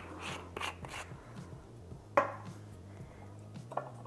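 Spice jars handled and set down on a wooden cutting board: a few light taps and clicks, the sharpest about two seconds in, over a faint low hum.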